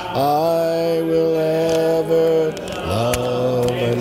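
Congregation singing a hymn a cappella, slowly, in long held notes; the tune steps down to lower notes about three seconds in.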